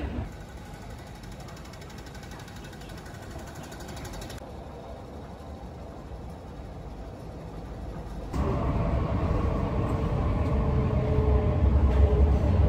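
Quiet background noise of a metro station, then, about eight seconds in, the louder steady low rumble of an MTR train running, heard from inside the carriage.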